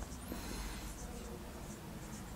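Marker pen writing on a whiteboard: a string of short, faint squeaks and scratches of the felt tip on the board.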